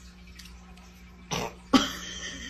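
Quiet room, then a short cough-like burst about a second and a half in, followed by a second sharp sound near the end.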